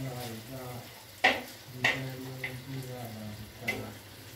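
Lamb kavurma sizzling as it fries in sheep's tail fat, with a few sharp clicks.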